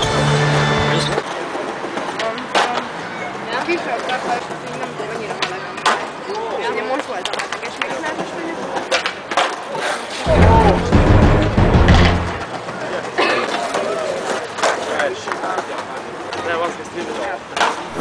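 Skateboards on stone paving: wheels rolling and irregular sharp clacks of boards hitting the ground as tricks are tried, with a louder, deeper stretch of about two seconds just past the middle.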